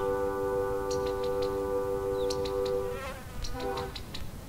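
Ambient electronic music: a sustained synth-like chord held steady, which wavers and breaks up about three seconds in, with small groups of short, high clicks scattered over it.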